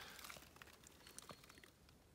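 Near silence, with a few faint ticks.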